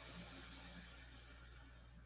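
A faint, slow breath out, an airy hiss that starts suddenly and fades over about two seconds, over a low steady room hum.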